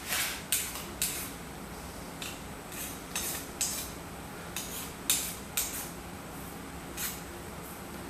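Hand file scraping along the edge of a small machined insert plate, deburring it: about ten short rasping strokes at uneven intervals.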